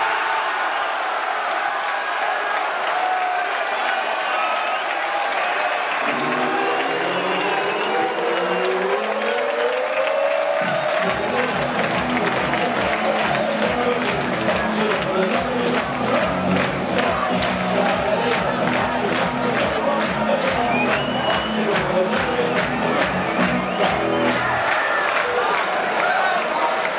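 A football crowd cheering a goal. About six seconds in, music comes in with rising tones, and from about eleven seconds it carries a steady beat.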